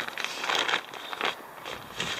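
Crinkling and rustling of a Zpacks Arc Blast backpack's stiff Dyneema fabric as a hand rummages inside the open roll-top, busiest in the first second or so and then quieter.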